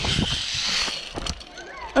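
A rushing hiss of wind and movement on a handheld camera fades away over about the first second, followed by light knocks and rustling as the camera is handled.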